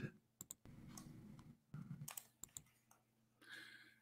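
Several faint, scattered clicks from someone working a computer, over near silence.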